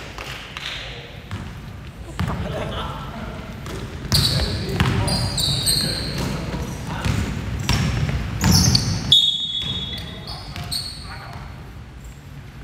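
Basketball game on a hardwood gym court: the ball bouncing, sneakers squeaking sharply on the floor, and players' voices echoing in the large hall.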